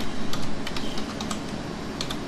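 Typing on a computer keyboard: an irregular run of keystrokes entering a DOS command, thinning out near the end.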